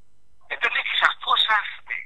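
Speech heard over a telephone line: a voice with a narrow, thin sound, starting about half a second in after a short pause.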